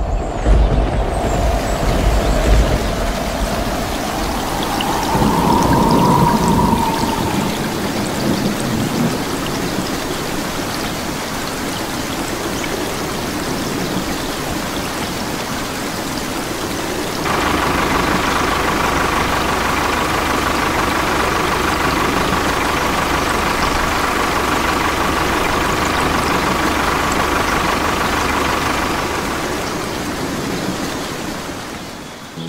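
Storm sound effects: a low rumble of thunder and a whistling wind that rises in pitch over the first several seconds, then the steady hiss of rain, which turns louder and heavier a little past halfway, with a thin steady tone on top.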